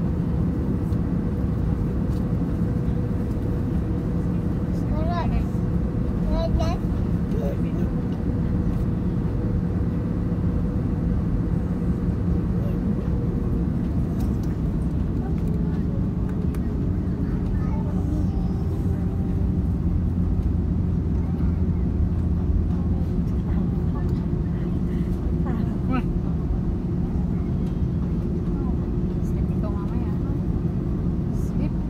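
Cabin noise of an Airbus A330neo taxiing: the steady hum of its Rolls-Royce Trent 7000 engines at low thrust, with a whining tone that slowly drops in pitch about halfway through.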